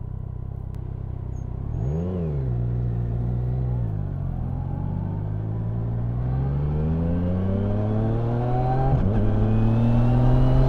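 Yamaha Niken GT's inline three-cylinder engine idling, with a short rise and fall in revs about two seconds in. From about four seconds the engine note climbs steadily as the bike accelerates away, dipping briefly at a gear change near the end.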